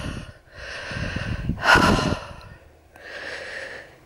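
A walker's breathing close to the microphone: three audible breaths about a second apart, the middle one the loudest, as she catches her breath after a very steep climb.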